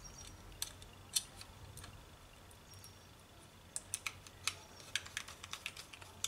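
Small sharp clicks and taps of a screwdriver and screws against a metal laptop drive caddy as a solid state drive is screwed into it. A few scattered clicks, then a quicker run of them about four to five seconds in.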